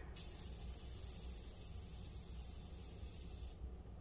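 A faint, steady high-pitched hiss that starts and stops abruptly, over a low background hum.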